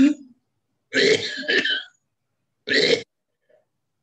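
A man coughing and clearing his throat in short bursts: one at the very start, two close together about a second in, and one more near three seconds.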